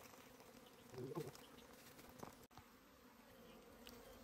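Honeybees buzzing faintly around their opened ground nest, the buzz swelling briefly about a second in as a bee passes close. A small click comes a little after two seconds.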